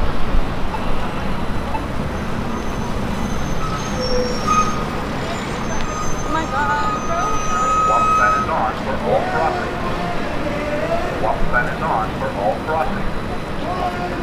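Busy downtown intersection ambience: a steady rumble of traffic with passing vehicles, and pedestrians' voices in the second half. A single high tone is held for about two seconds just after the middle.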